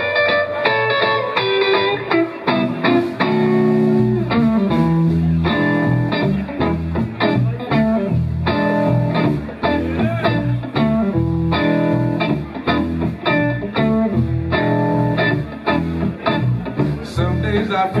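Live blues: an electric guitar opens the song with melodic lead lines, and low bass notes join about four seconds in as the band comes in behind it.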